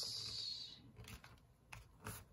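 Hands pressing and smoothing a paper label tag down onto a kraft-paper pocket: a short, high paper rub lasting under a second, followed by a few faint taps of fingers on the paper.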